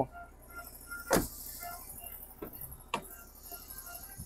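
Car doors being worked: a thump about a second in, then a sharp latch click about two seconds later.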